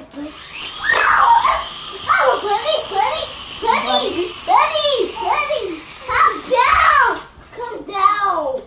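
Children shouting and shrieking excitedly, high-pitched calls that swoop up and down one after another without clear words.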